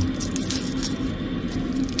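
Dry garlic skins crackling faintly as cloves are peeled by hand. Under it runs a steady low hum from the motorhome's heater fan, turned up to its fifth setting.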